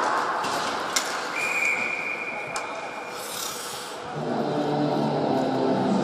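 Ice hockey rink sounds: sharp clacks over a steady hall noise, a referee's whistle held in one steady tone for about two seconds, a hissing skate scrape, then a low sustained drone with several pitches comes in about four seconds in and gets louder.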